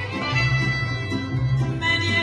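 Mariachi band playing an instrumental passage: violins carry the melody over strummed guitars and a low bass line that beats out the rhythm.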